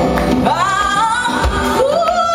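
A woman singing live over congas and band accompaniment: a long note that slides up about half a second in and is held, with another rising note starting near the end.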